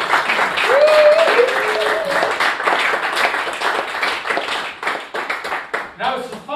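Small audience applauding, with a voice calling out over the clapping early on; the applause peaks about a second in and then gradually thins.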